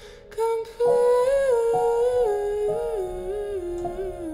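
A woman humming a slow wordless melody that steps gradually downward, after a brief break with a few short notes in the first second. Soft held piano notes sound beneath the voice.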